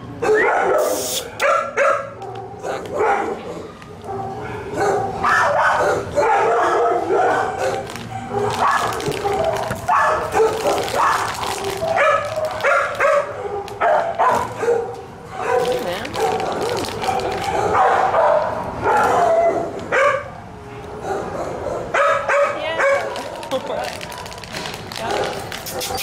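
Dogs in shelter kennels barking, yipping and whining almost without pause, several voices overlapping.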